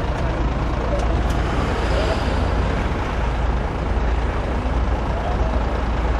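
Military truck's engine running with a steady low rumble, heard from inside its covered rear bed, with faint voices of the men aboard.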